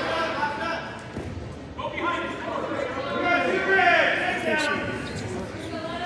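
Indistinct voices of people in a reverberant school gym calling out during a wrestling bout, loudest about four seconds in, with a short thump soon after.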